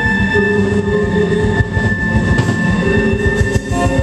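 Live band playing an instrumental stretch of a song: long held tones over a steady drum beat.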